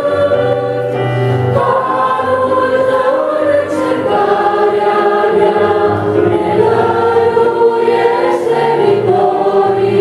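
A mixed vocal group of women and a man singing a Christian hymn in harmony, with held notes over electronic keyboard accompaniment.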